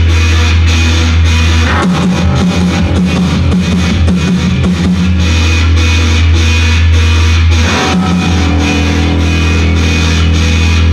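Live rock band playing an instrumental passage: electric guitar and drum kit over long held bass notes that shift pitch about two seconds in and again near eight seconds.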